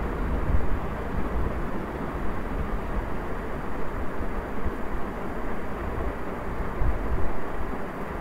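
A steady low rumble of background noise, strongest in the deep bass, with small swells in loudness and no distinct events.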